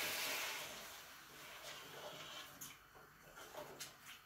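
Sizzling in a pot of frying chicken dies away over the first second or so as the added broth cools the pan. After that come a few faint knocks of a wooden spoon stirring in the pot.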